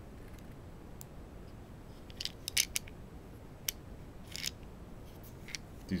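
Small plastic carbide-insert case being opened by hand: a series of sharp plastic clicks and snaps, the loudest a quick cluster about two and a half seconds in, with a few more scattered after. The snap-shut lid takes a little force to open.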